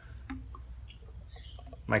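A plastic chemical concentrate bottle being handled and tipped over a plastic pressure sprayer, giving a few faint small clicks and taps over a steady low hum.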